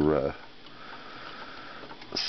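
A hesitant spoken "uh" trailing off, then a faint steady hiss of room noise with no distinct events.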